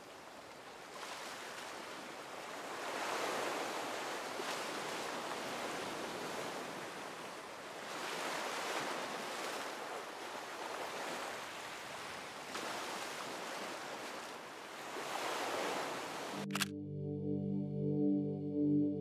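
Ocean surf washing over a rocky shore, the rush of water swelling and easing every few seconds as each wave comes in. Near the end a single sharp click cuts the surf off and music begins.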